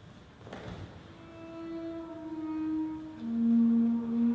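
Double bass bowed in long held notes: a note that steps slightly lower in pitch, then a lower, louder note begins about three seconds in. A single thump sounds about half a second in.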